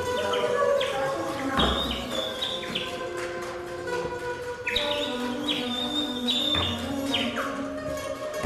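Live contemporary chamber music for flute, plucked strings and percussion: short high whistled chirps and stepping notes over held tones, with a low drum-like thud twice, about a second and a half in and again near the end.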